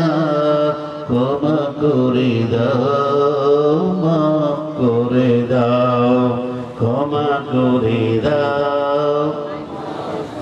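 A man's voice chanting a sermon in long, held, wavering notes into a microphone, in several drawn-out phrases with brief breaks between them.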